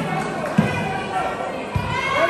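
Volleyball being struck during a rally: sharp thumps of the ball, one about half a second in and one near the end, over crowd voices.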